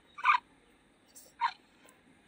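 Two short cat calls about a second apart from Google's 3D augmented-reality tabby cat, played through a phone's speaker.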